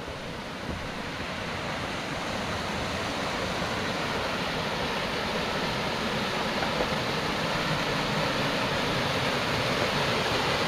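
Small mountain waterfall rushing steadily into a rocky pool, its sound growing gradually louder.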